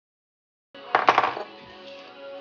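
Silence, then the sound cuts in about three-quarters of a second in, and a quick cluster of sharp metallic clinks follows. These come from an aluminium vise block being set down on the steel table of a Sherline mill.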